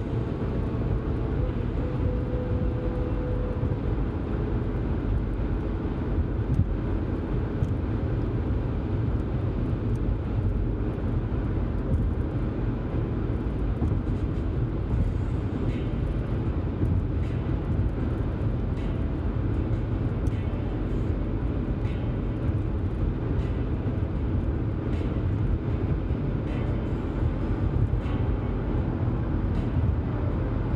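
A car driving at highway speed, heard from inside the cabin: a steady low rumble of road, tyre and engine noise that holds an even level throughout.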